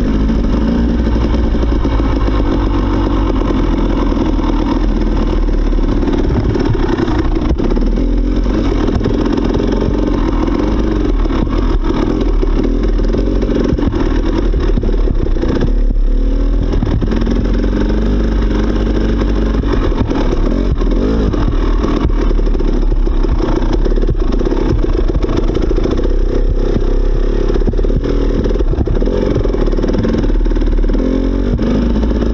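Dirt bike engine running at low trail speed, its revs rising and falling as the throttle is worked.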